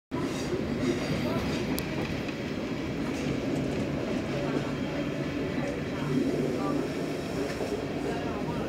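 Bernese Oberland Bahn train running along the track, heard from inside the carriage: a steady rumble of wheels and running gear, with one sharp click about two seconds in.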